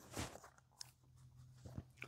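Near silence broken by a few faint, brief rustles and a click as paper postcards are handled and picked up.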